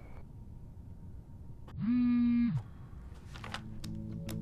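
A woman's short closed-mouth 'mm', held on one pitch for under a second, over quiet room tone.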